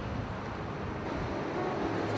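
Steady outdoor street noise from passing traffic, with faint music beginning to come in near the end.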